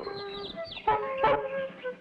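Cartoon bird calls from a flock of comic birds: a string of short pitched, clucking notes, with a high falling whistle in the first half.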